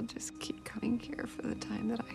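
A soft whispered voice, short breathy phrases, over quiet held music notes.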